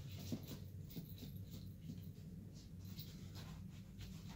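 A cat clawing and kicking a fabric catnip kicker toy on carpet: a string of short, faint scratchy scrapes and rustles over a low steady hum.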